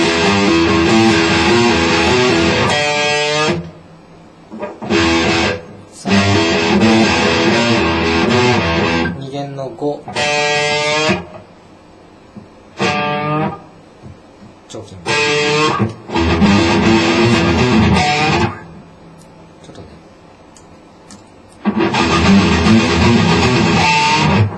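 PRS electric guitar played through an amplifier in short practice phrases, a long passage at first and then shorter bursts of a second or two, with pauses between them.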